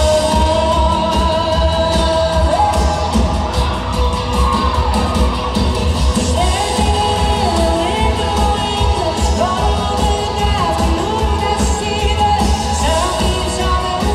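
Live pop band playing: a woman sings long held, sliding notes over heavy bass and drums, picked up by a phone in the crowd.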